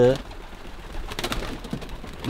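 Adana pigeons on the ground cooing faintly, with a few short sharp clicks about a second in.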